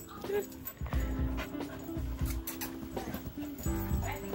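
Background music over a small dog playing on carpet, with brief dog noises and several soft thumps.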